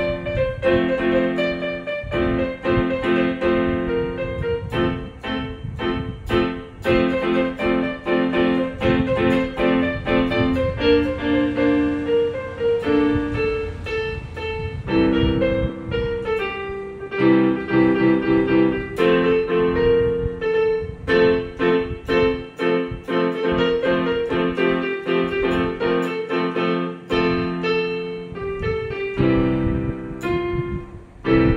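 Casio portable electronic keyboard played with both hands: a running melody of many short notes over held lower chords.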